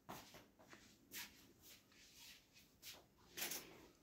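Near silence, with a few faint scrapes of a spatula stirring water chestnut flour roasting in ghee in a steel kadhai, about a second in and again near the end.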